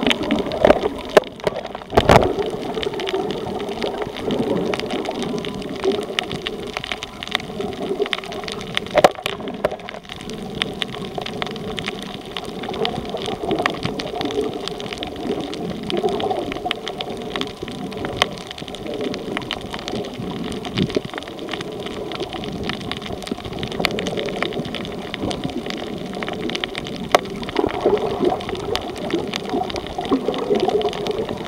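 Underwater sound picked up by a submerged camera while snorkeling over a reef: a steady, muffled rush of water scattered with many sharp clicks and crackles. Two louder knocks stand out, about two seconds in and about nine seconds in.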